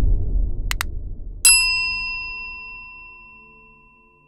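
A low rumble fading away, two quick clicks, then a single bright bell-like ding about a second and a half in that rings on and slowly fades.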